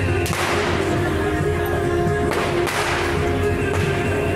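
Firecrackers going off in two sharp crackling bursts, one near the start and one about halfway through, over steady procession music with a sustained tone.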